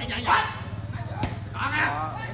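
Short shouts from players during a volleyball rally, with one sharp slap of a hand striking the ball a little past halfway, over a steady low hum.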